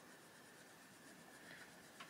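Faint sound of an Arteza Expert coloured pencil rubbing on paper as it colours in, close to silence.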